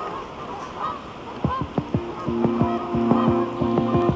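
Canada geese honking, a flock calling, with music fading in about halfway through as steady held notes with repeated falling strokes.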